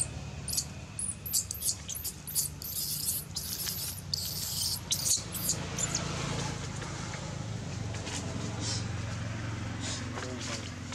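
Baby monkey squeaking, a quick run of short, high-pitched squeaks, several a second, that stops about six seconds in, over a steady low hum.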